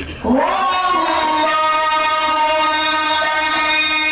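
Male Quran reciter's voice amplified through a microphone, sliding up about a quarter second in into one long held note, in melodic tajweed recitation.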